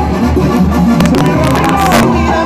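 Live banda sinaloense (Mexican brass band) playing: a tuba bass line pumping low notes on a steady beat under brass and woodwind melody, loud throughout.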